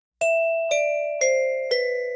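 Background music beginning: four bell-like notes about half a second apart, each a step lower than the last, ringing on after each strike.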